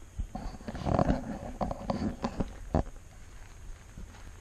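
Handling noise of a hand-held camera being turned around: rustling and rubbing on the microphone with a few sharp knocks, mostly in the first three seconds.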